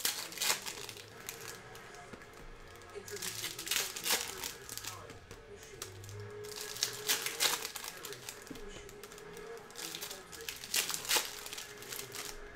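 Foil wrappers of 2012 Bowman Sterling baseball card packs being torn open and crinkled by hand, in several short bursts a few seconds apart.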